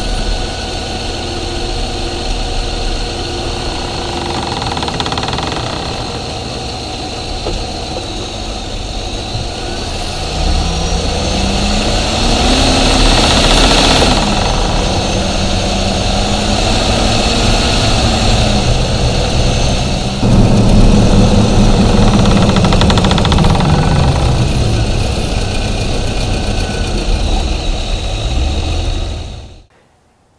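Engine bay of a 2019 Chevy Silverado at low speed: the engine running, its note rising and falling a few times in the second half, with a rhythmic knocking rattle like a steel ball bouncing in a plastic box. The rattle comes from the Stillen cold-air scoop interfering with the opening and closing of the active aero grille shutters.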